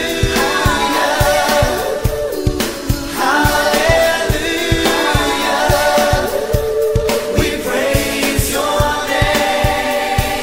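A Christian pop song: sung vocals over a steady drum beat.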